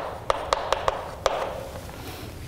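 Chalk writing on a chalkboard: a quick, irregular series of sharp taps as the chalk strikes the board, with faint scratching between them.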